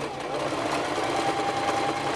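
Electric sewing machine running continuously, its needle stitching through layers of felt, with a steady motor whine coming in about a second in.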